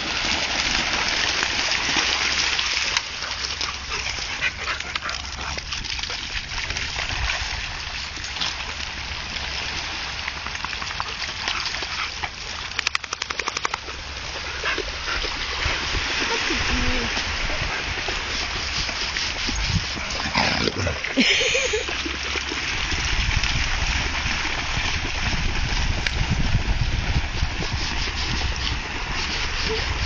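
Steady wash of surf and wind noise on the beach, with wind rumbling on the microphone. A dog barks briefly about two-thirds of the way through.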